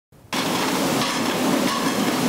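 Conveyor-type commercial dishwashing machine running, a steady hiss with rattling of plates in its racks, cutting in abruptly just after the start.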